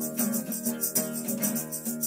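Acoustic guitar strummed in a steady rhythm, with a hand-held shaker rattling along at about four strokes a second.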